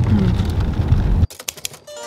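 Low road rumble inside a moving car's cabin that cuts off abruptly about a second in, followed by a quick run of soft clicks.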